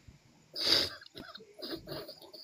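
A person coughs once, a loud short burst about half a second in, followed by fainter breathy sounds.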